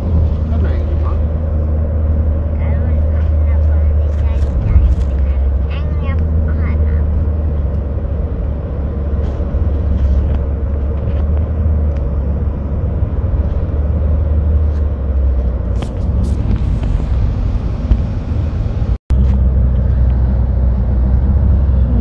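Steady low rumble of a car's engine and tyres heard from inside the cabin while driving on a highway; the sound breaks off for an instant near the end and the same rumble carries on.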